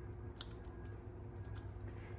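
Foam adhesive dimensional being peeled from its backing and handled between the fingers: a handful of faint small ticks and crackles, the sharpest about half a second in.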